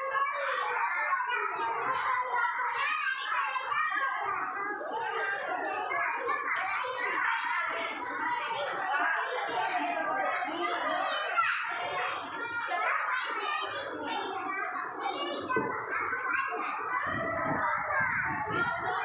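A group of young children chattering and calling out all at once as they play, a steady babble of many overlapping high voices.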